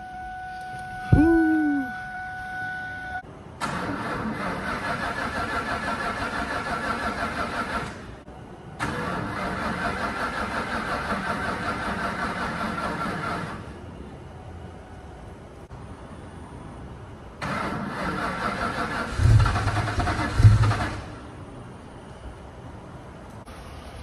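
A steady warning tone, then the starter cranking the SVT Mustang Cobra's supercharged V8 three times, each try lasting a few seconds with an even pulsing rhythm. The engine does not catch, apart from a few heavy low thumps near the end of the third try; it has sat for about two months.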